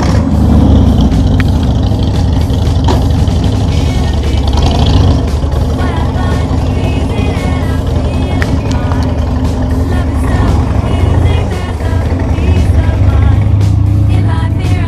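Motorcycle engine running loud and low, starting abruptly and carrying on steadily, with music playing over it.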